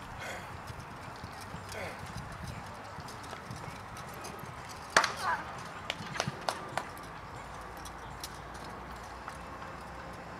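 Horse hoofbeats as a horse moves along a jousting list, with one sharp knock about halfway through followed by a few quick clacks over the next couple of seconds.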